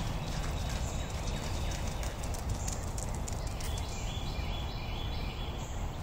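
Outdoor ambience: a steady low rumble with scattered faint clicks and some faint high chirps in the second half.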